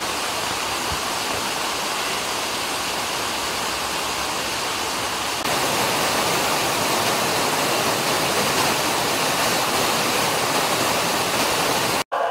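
Rainwater rushing down a flight of stone steps in a steady torrent, growing louder about five and a half seconds in.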